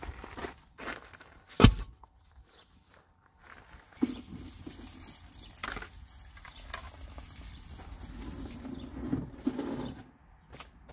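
Footsteps on garden soil and the handling of concrete cinder blocks. A single sharp knock comes about two seconds in, followed by scattered knocks and scrapes.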